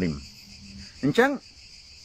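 Insects chirring in a steady high-pitched drone, under a man's short bursts of speech.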